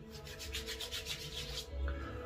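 Hands rubbing briskly with Aqua Velva aftershave, a quick, even run of rubbing strokes lasting about a second and a half before the splash is pressed onto the face.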